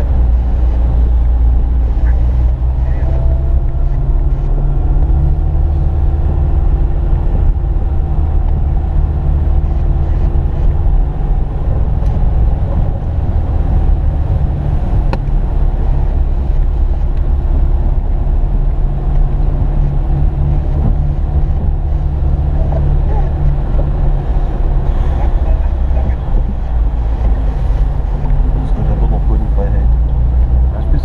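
Car engine and road noise heard from inside the cabin as the car drives slowly through shallow floodwater on the road: a steady low rumble with a wash of noise from the tyres in the water.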